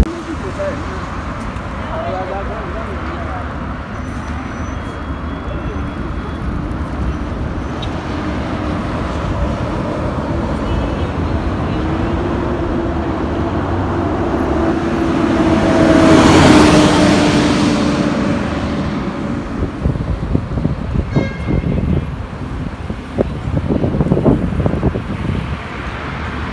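City road traffic: a steady wash of passing cars, with one vehicle passing close and loudest about two-thirds of the way through, its engine note rising and then falling away.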